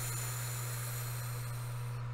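A woman's long, steady breath, heard as an even hiss, taken during guided breath work; it stops right at the end. A steady low hum runs underneath.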